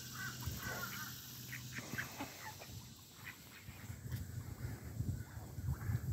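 Canada geese and ducks making a few short, soft calls, mostly in the first second or so, followed by light scattered rustling.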